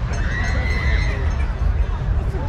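Horse whinny: a single high call lasting about a second, rising slightly then falling, over a steady low rumble.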